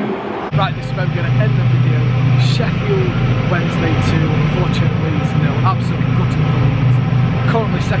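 A steady low engine hum, typical of a train idling in a station hall, starting suddenly about half a second in, with voices around it.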